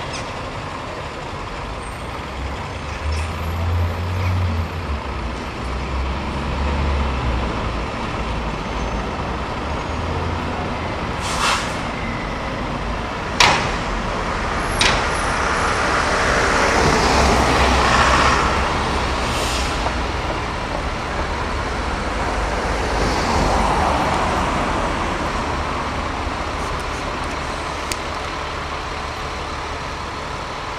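Diesel buses in town traffic, engines running at the stop, with a couple of short sharp air hisses about midway and a longer swell of noise a few seconds later.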